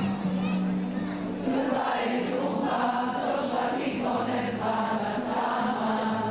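A crowd singing a song together in chorus, many voices at once, over steady held low notes.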